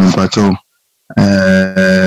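Speech only: a voice talking over a video-call feed. It drops out to dead silence for about half a second, then holds one long drawn-out syllable.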